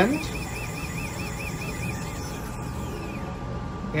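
An electronic warbling alarm tone, cycling about five times a second, which stops about two seconds in; a faint steady high tone then remains.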